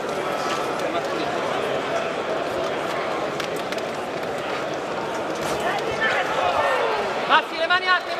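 Arena crowd noise during a boxing bout: many voices talking and calling out at once in a large hall, with a single voice shouting out more clearly near the end.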